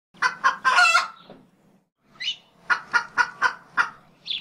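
Bird calls. There are two short calls and a longer call in the first second, then, after a pause, a rising call and a run of five short calls at about three a second.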